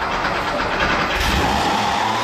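Air-cooled flat-six engine of a classic Porsche 911 running just after starting, with a brief swell in its low rumble about a second in.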